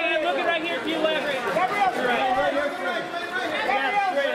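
Several voices talking over one another: press photographers calling out to people posing for pictures.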